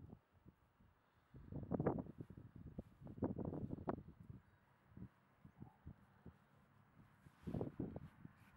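Wind buffeting the microphone in a few uneven gusts of low rumble: one about two seconds in, another around three to four seconds, and a last one near the end.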